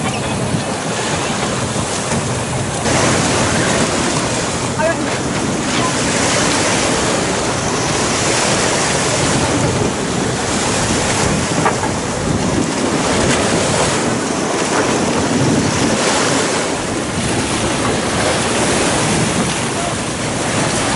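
Steady wind buffeting the microphone over sea waves washing in the shallows, with a few faint voices.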